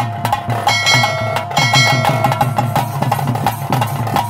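Live Tulu bhuta kola ritual music: fast, steady drumming with held high notes sounding above it, clearest in the first half.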